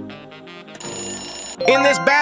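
A ringing bell sound effect, bright and steady, marks the end of a quiz countdown timer. It lasts just under a second and plays over upbeat background music. It stops as a narrator's voice begins near the end.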